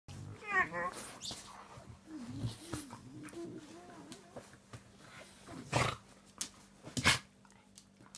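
Dogs vocalizing while playing: a short, high whine about half a second in, then a long, low, wavering whine-like moan, and two sharp bursts of noise near the end.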